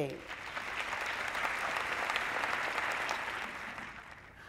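Theatre audience applauding, building up after the first moment and fading away toward the end.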